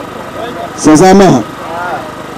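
A man's voice through a microphone, one short loud phrase about a second in, with a steady, quieter background between phrases.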